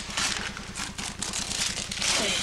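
Gift-wrapping paper being torn and crumpled in several quick, irregular rips as a present is unwrapped, over a steady low hum.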